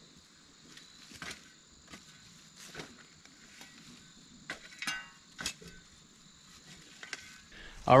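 Insects chirring steadily in a high, thin drone, with a few faint, scattered scrapes and knocks.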